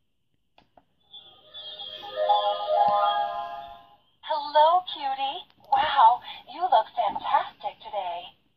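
My Enchanted Mirror talking toy switching on: a short electronic jingle plays for about three seconds, then the mirror's recorded voice starts speaking through its small built-in speaker.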